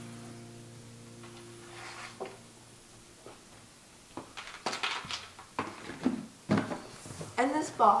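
Green shamrock bead necklaces rattling and clicking as a handful is lifted and dropped back into a box, a quick run of sharp clicks lasting a few seconds.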